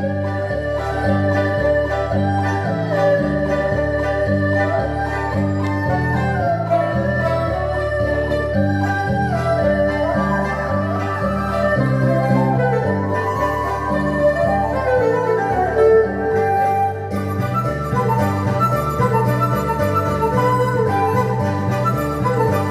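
A Chinese traditional instrumental ensemble playing a lively folk tune: erhu and dizi bamboo flute carry a gliding melody over pipa and other plucked lutes keeping a steady, even beat.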